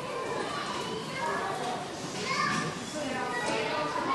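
Several children's voices overlapping as they play, indistinct chatter and calls with no clear words.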